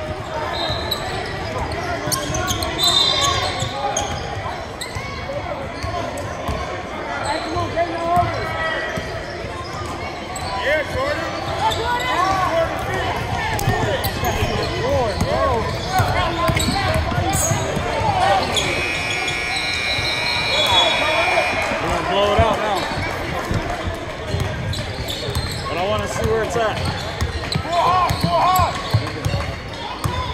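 A basketball bouncing on a hardwood gym floor during play, amid continuous voices in the hall. A little past the middle a held buzz-like tone sounds for about three seconds.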